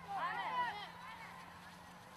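A group of recruits shouting together in short, overlapping yells, loudest in the first second and then fainter, with a low steady hum underneath.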